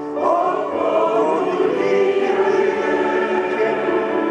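Large mixed choir of men and women singing together in sustained, layered chords, swelling up just after the start.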